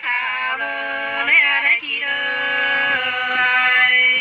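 Unaccompanied women's voices singing sli, the Nùng folk love song of Lạng Sơn, in long held notes that bend and waver in places.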